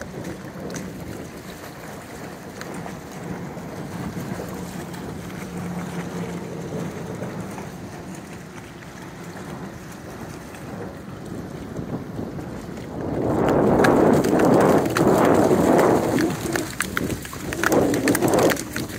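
Water splashing as dogs run through a shallow river, loud and uneven in the last few seconds. Before that there is a quieter, steady outdoor noise.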